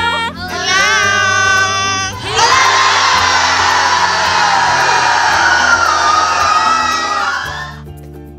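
A small group of voices calling out together in one long shout, then from about two seconds in a large crowd cheering and shouting, over background music. The crowd dies away near the end, leaving the music.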